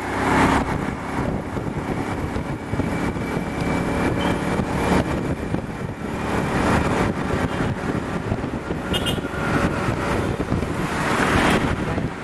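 Road traffic, a steady wash of engines and tyres, with vehicles passing close by about half a second in, around the middle and near the end.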